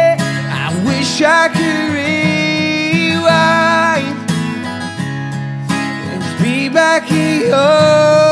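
A man singing long, held notes without clear words over a strummed acoustic guitar in a live solo performance.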